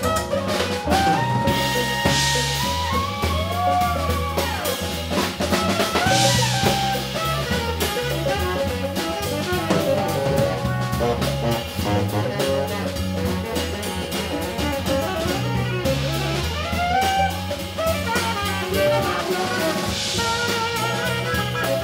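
A live band playing, with a tenor saxophone carrying a lead line of bending, sliding notes over a drum kit, electric guitar and bass guitar.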